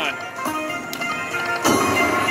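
Aristocrat Dragon's Riches Lightning Link slot machine playing its free-game music and reel sounds, with a sharp hit about three-quarters of the way in as the reels land.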